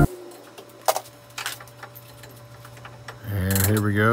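A few faint metallic clicks and taps of hand tools working on a truck's driveshaft underneath the vehicle, over a steady low hum. A man's voice starts near the end.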